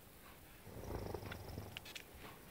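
A sleeping man's soft snore: a low sound that starts just under a second in and lasts about a second.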